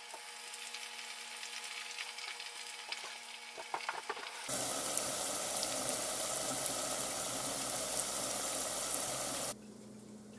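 Breaded globemallow stems deep-frying in hot oil in a fry basket, a steady sizzle. It is fainter at first with a few light clicks, jumps suddenly louder about halfway through for some five seconds, then cuts off abruptly near the end.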